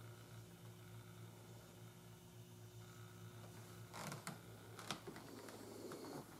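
Near silence: faint room tone with a steady low hum, and brief handling rustles and light knocks about four seconds in and again near five seconds as the camera is moved.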